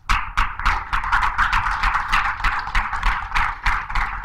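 Audience applauding, with dense, irregular clapping that starts suddenly.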